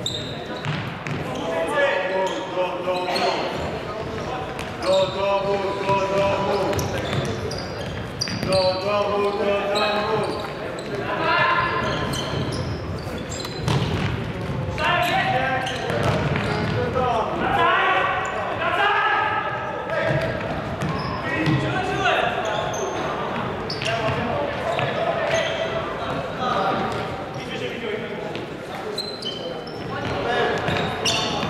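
Futsal game sounds in a sports hall with a wooden floor: voices shouting and calling out, echoing in the hall, with repeated thuds of the ball being kicked and bouncing on the floor.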